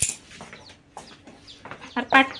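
Faint clucking of chickens, opening with a brief sharp rustle.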